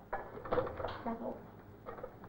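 Faint, indistinct voices in the room, with a few soft clicks.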